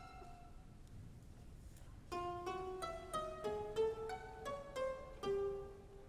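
Chamber orchestra playing. After a quiet pause, a run of about ten short plucked notes starts about two seconds in, roughly three a second, moving up and down in a middle register.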